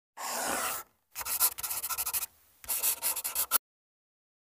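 Chalk scratching on a blackboard in three bursts: a short smooth stroke, then two longer runs of quick strokes, stopping shortly before the end.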